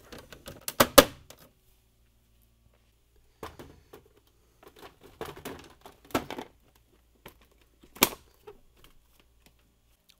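Plastic ice maker cover and ice bucket of a Samsung fridge freezer being refitted: clicks and knocks of plastic on plastic, with a sharp snap about a second in as the cover goes on. Scattered small clicks follow as the bucket is slid in, and a final sharp click near the end.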